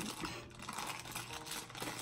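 Faint, irregular light taps and rustles of hands handling small things at a desk.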